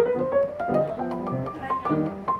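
Solo jazz piano on a grand piano: both hands playing, with bass notes and chords under a moving right-hand melody, notes struck several times a second.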